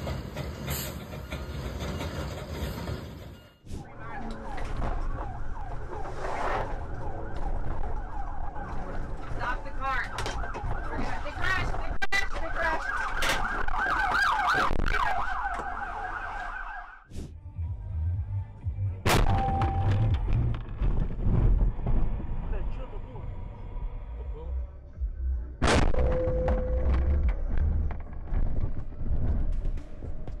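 Emergency-vehicle siren, its pitch wavering up and down, over car and road noise for a stretch in the middle. The rest is mixed road and engine rumble, broken by abrupt cuts between dashcam clips.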